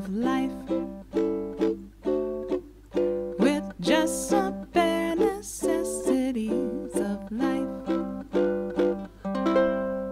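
Ukulele strummed in a steady rhythm, playing the song's ending turnaround, C, A7, D7 and G7 for two beats each, repeated as a tag.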